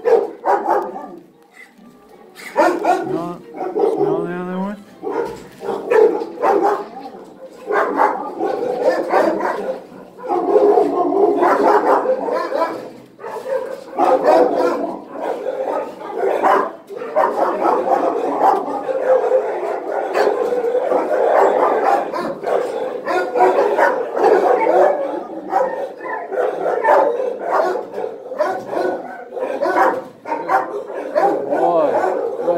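Kenneled shelter dogs barking and yelping, many at once and without a break.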